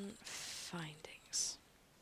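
A woman's voice speaking a word softly, half-whispered and breathy, then a short pause.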